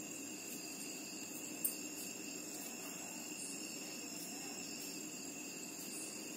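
Insects trilling steadily at several high pitches, with a single sharp click about a second and a half in.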